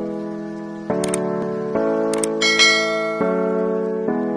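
Intro music: held chords that change about once a second, with short, bright chime-like flourishes about a second in and again just past the middle.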